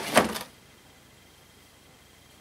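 A brief scrape and rustle as a chrome vacuum-cleaner extension tube is lifted out of its cardboard box, about half a second long near the start, followed by quiet room tone.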